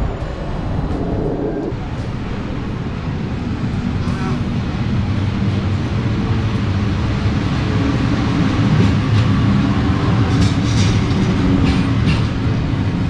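Locomotive-hauled electric passenger train pulling into a station platform: a steady low rumble that grows louder as it comes in.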